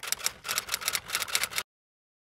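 Typewriter key sound effect: a quick, uneven run of clacking keystrokes that stops abruptly a little past one and a half seconds in, leaving dead silence.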